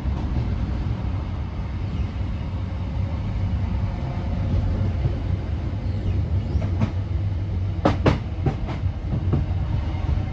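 A steady low rumble with a cluster of sharp clicks or knocks in the last few seconds.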